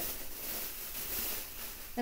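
Rustling of fabric as a sweater is handled and pulled out of a storage tote, a soft, uneven hiss.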